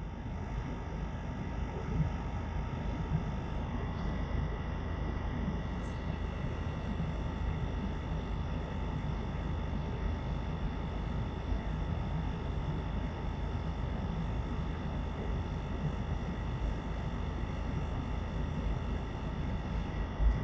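Steady road and engine noise of a car driving on fresh asphalt, heard from inside the car, with a faint steady whine over it.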